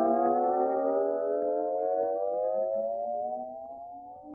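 Siren-like sound effect: one long tone with several overtones, rising slowly in pitch and fading toward the end.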